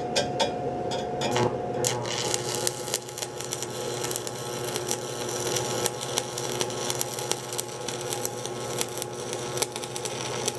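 Electric welding arc struck about two seconds in and held steadily: a dense crackling hiss full of small pops, over a steady machine hum.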